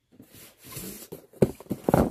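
A cardboard shipping box being picked up and handled, with rustling and two sharp thumps, one about a second and a half in and one just before the end.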